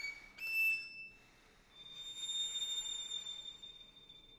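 Solo violin holding very high, thin, whistle-like notes: a short note just after a rising run, then a longer, quieter one that fades near the end, with no piano under it.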